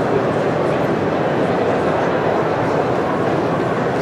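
Steady background chatter of a crowded trade-show hall, many voices blurred together with no single voice standing out.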